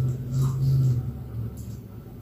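Low rumble of thunder from a storm with heavy rain, fading away about a second and a half in.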